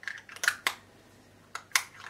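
Plastic makeup packaging being handled: about five sharp clicks and taps, a cluster near the start and a pair a little past the middle.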